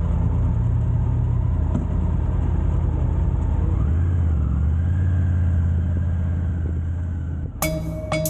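Triumph Tiger 850 Sport's three-cylinder engine moving off at low speed with a steady low note. About four seconds in, the note drops lower and grows stronger.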